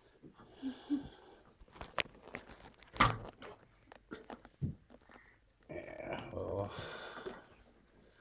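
Scattered small clicks and rustles of hands handling plastic Lego parts, with a short louder clatter about two to three seconds in. A faint voice murmurs briefly near the end.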